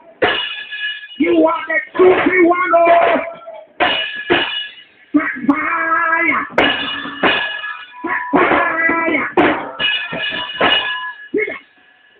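A man preaching in short, emphatic phrases with music behind him; a steady held note carries on for a moment after his voice stops near the end.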